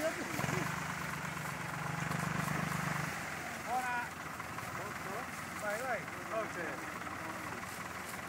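A motor running with a steady low drone that cuts off about three seconds in. After that, people call out to one another.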